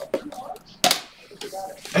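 A single sharp plastic click a little before halfway through, from a clear magnetic one-touch card holder being handled, amid a few lighter handling clicks.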